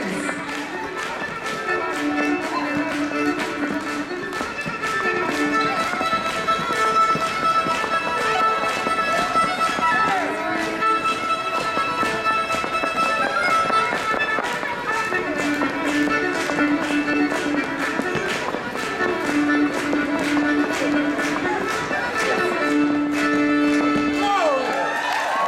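Live fiddle playing a fast dance tune, with held notes and repeated low phrases, over a steady run of taps from dancers' feet jigging on a wooden floor.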